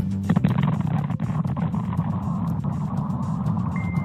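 Factory explosion caught on a security camera: a sudden blast about a third of a second in, then a sustained, ground-shaking rumble, over a news music bed.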